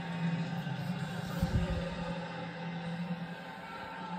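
Television broadcast audio of a college football game playing through the TV speaker, in a gap between commentary lines: steady stadium background with faint music. A low thump comes about a second and a half in.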